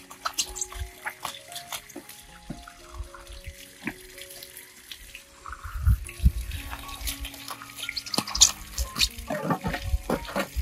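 Water running from the tap at the foot of a stainless-steel water tank and splashing as a boy washes his hands and feet under it, the splashing busier in the second half. Soft background music with stepped notes plays underneath.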